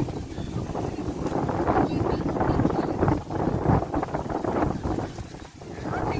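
Wind buffeting the microphone in irregular gusts, with muffled voices underneath.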